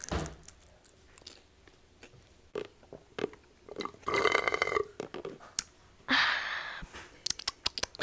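A chip crunching and mouth clicks close to the microphone, then a child drinking and letting out a drawn-out burp about four seconds in, followed by a second, noisier rush of sound.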